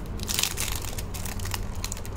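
Clear plastic wrapper crinkling as hands peel it off a small cardboard box, a dense run of sharp crackles loudest about half a second in.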